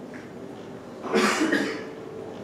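A person coughing once, about a second in, a short harsh burst in a small room.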